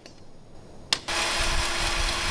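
A single sharp knock just before a second in, then a sawmill band saw cutting timber starts suddenly: a loud, steady hiss with a steady hum under it.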